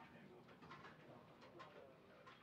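Near silence: room tone with a faint murmur of voices and a few light clicks.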